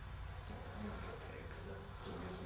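Quiet room tone: a steady low hum under a faint hiss, with faint murmured voices.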